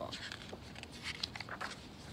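Paper pages of a hardcover picture book being turned: a quick series of short papery rustles and flicks.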